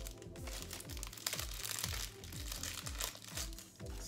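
Crinkling of a small plastic packet being handled and cut open with scissors, over background music with a steady bass beat about twice a second.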